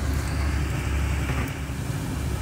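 Hot oil sizzling in a small saucepan as orange-battered quail eggs (kwek-kwek) deep-fry, over a steady low rumble.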